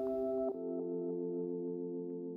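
Ambient background music of soft, sustained chords, moving to a lower, fuller chord about half a second in and then holding.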